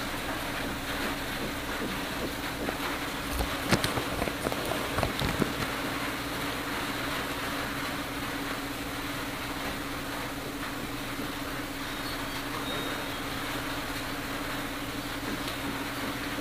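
Steady low hum with hiss, holding one constant low tone, with a few soft clicks about four to five seconds in.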